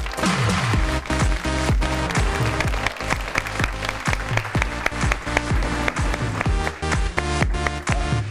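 Studio audience applauding over upbeat music with a steady beat. The applause is heaviest in the first few seconds and then thins out under the music.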